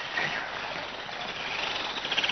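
Steady outdoor background hiss with no clear single source, picked up by a handheld camera microphone.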